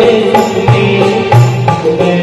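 A man singing a Hindi or Marathi song through a microphone and PA, with held, wavering notes over instrumental backing.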